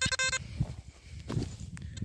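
XP ORX metal detector sounding a short, buzzy target tone in the first half-second, stuttering briefly, as an arrowhead is passed over its search coil: the detector's response to the metal object. Low handling rumble follows.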